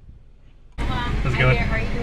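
Car idling with a steady low hum under people talking, after a sudden jump in level about three-quarters of a second in; before that only a faint hum.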